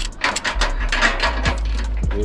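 Ratchet strap on a car-trailer wheel tie-down being worked, giving a quick run of sharp clicks as the strap is tightened.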